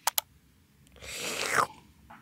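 Two sharp clicks in quick succession, then a short hissing slurp as coffee is sipped from a mug.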